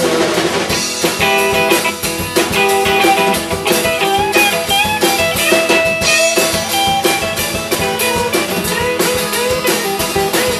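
Live acoustic and electric guitar duo playing an instrumental break: a strummed acoustic guitar keeps a steady rhythm while the electric guitar plays a lead line with bent, sliding notes.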